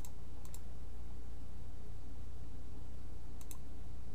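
A few faint computer mouse clicks, a pair about half a second in and another pair near the end, over a steady low hum.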